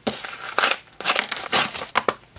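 A yellow padded plastic mailing bag crinkling and rustling in the hands as it is pulled open, in irregular crackles.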